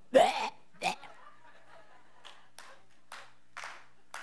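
A woman's two short throaty vocal sounds in the first second, a mock retch like someone trying to spit up during a deliverance prayer. After that only low room noise with a few faint, soft sounds.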